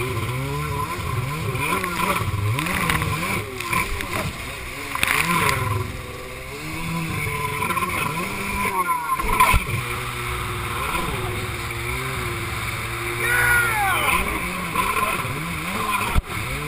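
Yamaha SuperJet stand-up jet ski engine revving up and down again and again as it is ridden through surf, over the rush and splash of water. The engine drops away briefly about nine seconds in.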